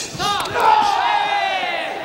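A loud shout, held for more than a second and slowly falling in pitch, over the noise of an arena crowd during a full-contact karate bout.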